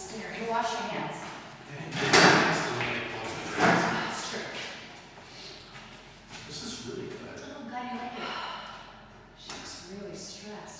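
Two loud thumps about two and three and a half seconds in, echoing in a large hall-like room, amid indistinct talking.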